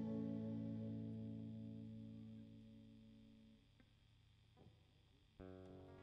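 Final chord on a digital stage piano ringing out and fading away over about three and a half seconds. Near the end, a new, quieter chord starts suddenly.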